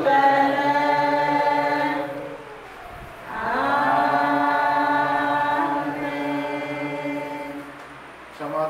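A church congregation sings in chorus, mixed voices holding long sustained notes, with no clear instrument under them. There are two phrases with a short break about two and a half seconds in.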